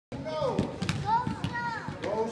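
Young children's high-pitched voices calling and chattering, with a few basketballs bouncing on a gym floor.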